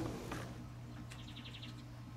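Backyard ambience: a steady low hum, with a bird's quick run of six or seven high chirps about a second in.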